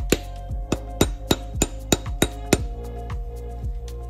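Steel head dowel being tapped into an aluminium engine block with a brass driver: a quick series of sharp metallic taps, about three a second, that stops about two and a half seconds in as the dowel seats. Background music underneath.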